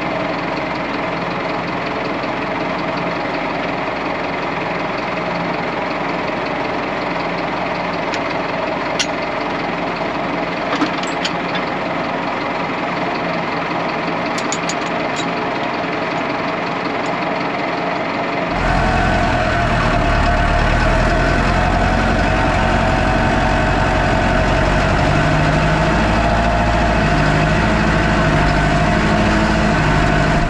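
Valtra N123 tractor's diesel engine idling, with a few sharp metal clinks about nine, eleven and fifteen seconds in as a wire crane is coupled to the three-point linkage hooks. About eighteen seconds in the sound switches to the tractor driving, the engine running louder and deeper.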